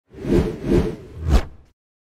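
Logo-intro sound effect: three quick whooshes in a row, the third ending in a sharp hit, then dying away.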